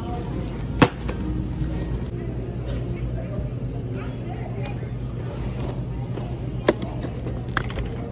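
Steady low hum of a grocery store's background noise, broken by a sharp knock about a second in and two shorter knocks near the end as packs of foam plates and a boxed snack pack are handled and set into a shopping cart.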